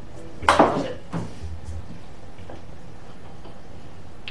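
A shot on a miniature pool table: the cue strikes the cue ball and balls clack together, with two sharp clicks about half a second in and a softer click about a second in. A few faint ticks follow as the balls roll on.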